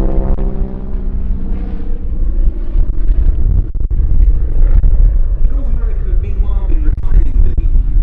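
North American Harvard IV's radial engine and propeller droning in flight overhead, over a heavy low rumble.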